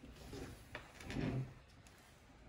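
Faint handling noise as the recording phone is reached for: jacket sleeve rustling, a light click a little under a second in, and a short low bump just after a second in, the loudest moment.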